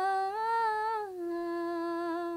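A young woman singing a Nepali song unaccompanied into a close microphone, holding one long note that rises slightly and then steps down about a second in.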